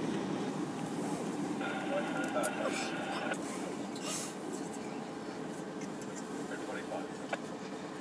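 Distant CN GP38-2W road-switcher's diesel engine (16-cylinder EMD 645) running steadily as a low rumble while it shunts freight cars. A brief muffled voice comes in about two seconds in, and there are a few faint clicks.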